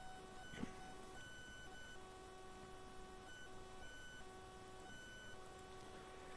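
Near silence: faint room tone with a faint electrical whine of a few steady high tones that cut in and out every second or so, and one soft click about half a second in.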